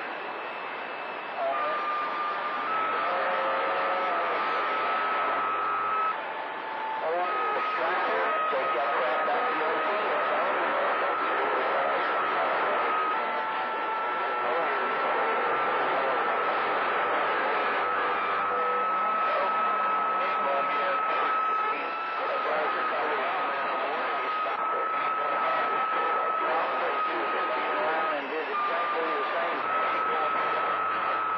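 CB radio receiving long-distance skip on channel 28: steady static, a thin whistling tone that runs through most of it with small jumps in pitch and a few breaks, and faint unintelligible voices under the noise.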